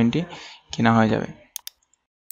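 Speech, then a quick pair of computer mouse clicks about one and a half seconds in, switching browser tabs.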